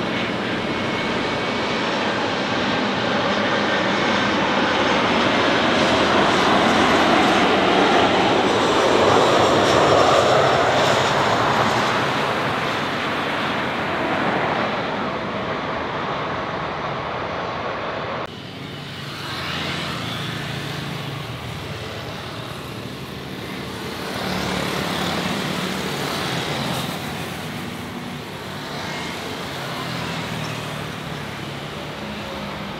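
Boeing 737-300 jet engines on landing, growing louder to a peak and then easing as the airliner touches down and rolls out on the runway. After a sudden cut about 18 seconds in, the quieter engine sound of an Airbus A330-300 on short final, with a low steady hum.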